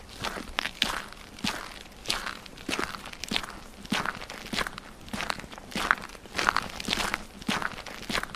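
Footsteps at a walking pace, about two to three short steps a second, unevenly spaced.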